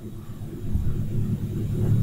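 A steady low background hum, with no other sound standing out.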